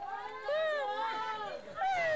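A high-pitched human voice holding long, drawn-out notes that bend up and down, breaking off about a second and a half in and starting again just before the end.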